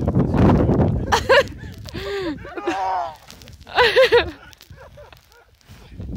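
A rush of low noise in the first second, then high voices whooping and laughing in short bursts, loudest about four seconds in.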